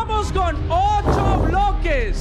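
Excited voices exclaiming and cheering over background music with a steady beat, with a louder burst of voices about a second in.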